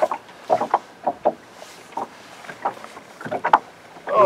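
Irregular short swishes and knocks from fishing off a boat, a couple each second, with one sharper knock near the end: water slapping on the hull and fly line being stripped in by hand.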